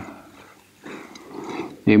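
A man's voice pauses mid-lecture. Through the pause a faint breathy sound is heard, and speech starts again near the end.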